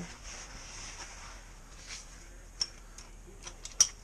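A few sparse, sharp metallic clicks from a 17 mm socket wrench being worked on the oil drain plug of a Can-Am Commander 800, irregular and starting about halfway through, with the loudest click near the end.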